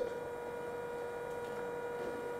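Steady faint electrical hum with a clear, constant pitch and overtones, over quiet room tone.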